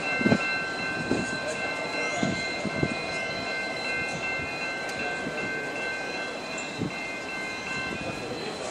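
Diesel locomotive moving slowly away over the tracks, its wheels giving occasional low clunks over rail joints and points, with a steady high-pitched squeal running underneath.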